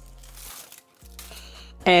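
Aluminium foil crinkling as it is handled and peeled off a bowl, in two short spells with a brief silent gap between them.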